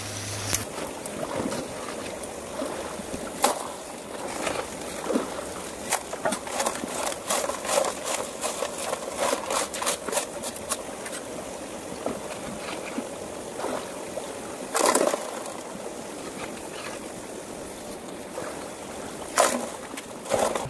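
Water running through a highbanker sluice into a shallow creek, with a shovel scraping and scooping gravel and dumping it into the hopper: rocks clatter and knock in bursts, with a loud clatter about three-quarters through and another near the end.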